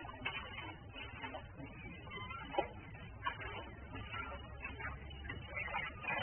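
Muddy water poured from a plastic bucket into a shallow, plastic-lined pit already holding water: faint splashing and trickling.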